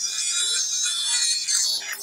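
Live experimental electronic music played from laptops and controllers: a dense, high-pitched texture of hiss and sustained tones with almost no bass.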